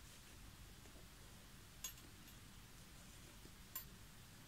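Near silence: room tone, with two faint, sharp clicks about two seconds apart.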